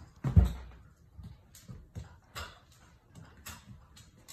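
A German shepherd shaking and mauling a plush toy: a thump about a third of a second in, then a scatter of short rustling and knocking noises as she thrashes and chews it.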